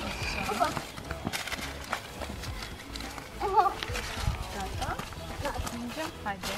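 Brief bits of voices over small clicks and rustles of paper sticky notes being gathered up off gravel, with a low wind rumble on the microphone.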